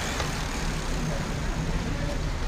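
Street traffic noise at an intersection: a steady low rumble of idling and passing cars.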